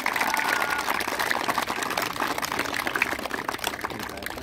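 A crowd of children clapping, a steady dense applause.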